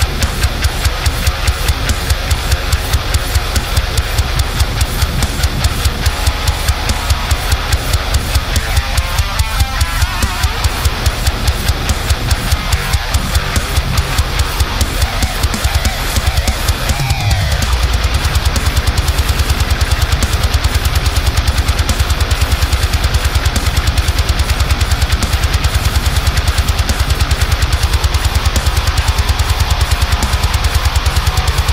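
Heavy-metal mix: an eight-string electric guitar tuned to drop F, played through a high-gain Neural DSP amp sim, over drums with a steady fast kick pulse. About 17 seconds in, a falling glide sweeps down, and the low end is fuller after it.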